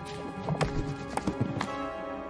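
Film score music with steady held notes, and a quick run of sharp, irregular clacks from about half a second in to near the end.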